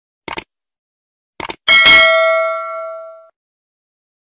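Subscribe-button animation sound effect: a quick double click, then another double click just over a second later. Then comes a bright bell ding, the loudest part, which rings and fades over about a second and a half.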